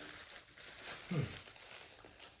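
Clear plastic wrapping crinkling and rustling as a bottle is turned over in the hands, with a short 'hmm' about a second in.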